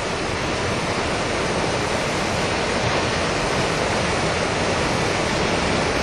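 Steady rush of flowing stream water, an even noise with no splashes or breaks.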